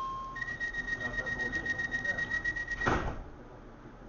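DLR B07 Stock passenger doors closing: a high-pitched door warning sounds in rapid, even pulses for about two and a half seconds, then the doors shut with a single loud thud about three seconds in.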